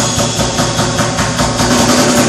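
Live band with trombone and trumpet playing loud and continuous over the rhythm section.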